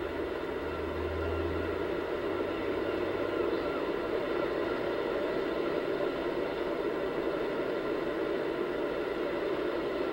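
Steady, even rushing noise of open-beach ambience picked up by a camcorder microphone, with no distinct events. A low hum is heard during the first two seconds.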